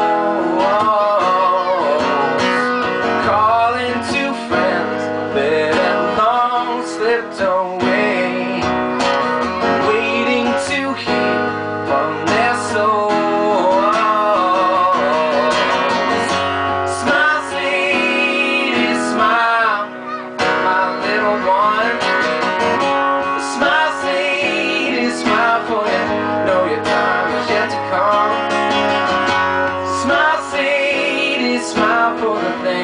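Live acoustic band music: a strummed acoustic guitar and a drum kit, with a man singing over them.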